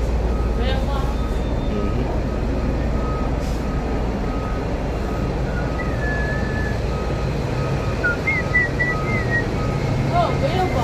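A vehicle's reversing beeper sounds a single-pitched beep about twice a second over the steady rumble of city traffic. A couple of brief, higher warbling tones come in the second half.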